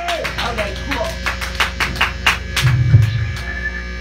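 A sparse break in a live rock band's playing: a quick run of sharp ticks from the drum kit, about five a second, over a steady amplifier hum, with one short low bass note about three seconds in.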